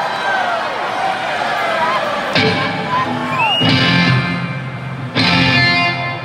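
Crowd voices and shouts in a concert hall. About two and a half seconds in, amplified electric guitar and bass chords are struck, three times in all, each ringing on.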